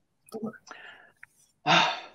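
A man says a couple of soft words, breathes out, then clears his throat near the end, readying a dry throat to sing.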